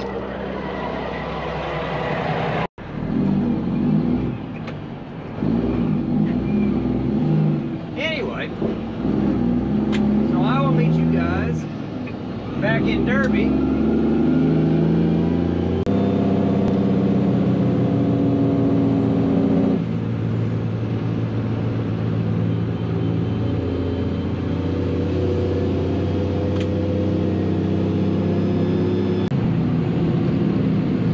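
Mack semi-truck's diesel engine heard from the cab while under way, its note changing in steps a few times before it settles into a steady run at road speed.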